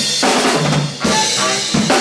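Live funk band jamming, with the drum kit to the fore: kick drum and snare hits over the band.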